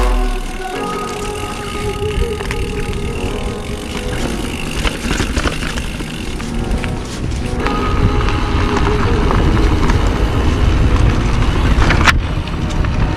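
Background music with held tones, over the low rumble and scattered rattles of a mountain bike rolling along a dirt forest trail. The riding noise grows louder in the second half.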